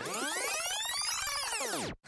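Synthesized sweep sound effect: a cluster of tones gliding up in pitch and then back down over about two seconds, cutting off abruptly at the end.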